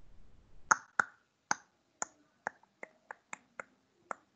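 A series of short, sharp clicks, about ten of them, starting just under a second in and coming irregularly at roughly two to three a second.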